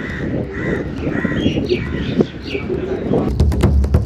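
Birds calling: a series of short, arching chirps over steady outdoor background noise. Near the end, music with a steady beat comes in.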